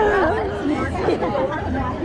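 Chatter of several girls' voices talking and laughing at once in a busy hall.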